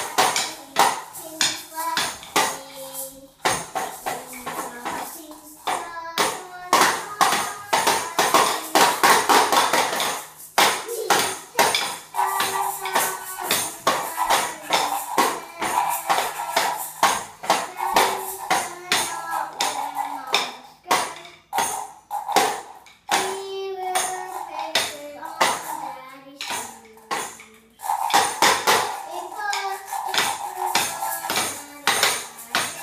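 Children's toy band playing: constant, uneven percussion hits from a small toy drum and maracas, with a toy horn blown in short notes that step up and down in pitch.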